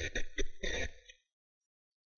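Short, irregular non-word sounds from a person's throat, like throat clearing, stopping about a second in, followed by near silence.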